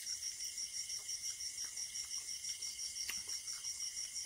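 Insects chirping in a steady, fast pulse of about six beats a second, with a few faint clicks of eating by hand.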